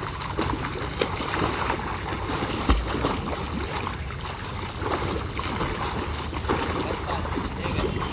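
Water splashing and sloshing from a swimmer's front-crawl arm strokes and kicks, a steady churn broken by many short splashes. A brief low thump a little under three seconds in.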